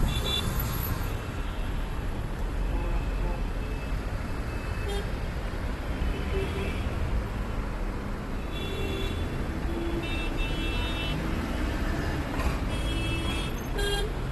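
Dense city traffic heard from a taxi window: a steady rumble of engines, with car horns honking in short blasts several times, at the start, in the middle and near the end.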